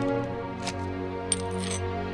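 Soft background music holding a sustained chord, with a short high-pitched clink about two-thirds of the way through.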